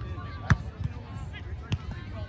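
A volleyball struck by players' hands during a rally: two sharp slaps about a second apart, with a few fainter knocks between.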